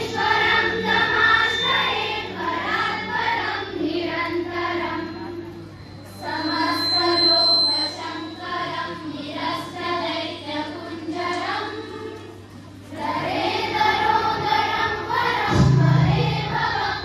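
A group of children singing a devotional song in chorus, phrase after phrase, with short breaks about six seconds in and again near thirteen seconds, over a steady low hum.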